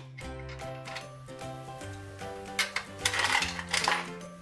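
Background music with steady notes. About two and a half seconds in comes a clicking mechanical rattle from a toy gumball bank's coin-and-crank mechanism being twisted to dispense a gumball.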